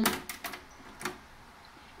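Clicks from a Sony TC-V715T cassette deck's transport as its buttons are pressed: a quick run of sharp clicks, then one more about a second in, as the tape playback stops and the mechanism changes mode. Faint tape hiss in between.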